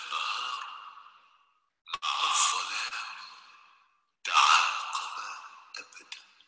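The film's soundtrack heard over the video call: a man's recitation of Arabic Sufi verses, so degraded that it comes through as breathy hiss. It comes in three phrases, each starting abruptly and fading out over about a second and a half.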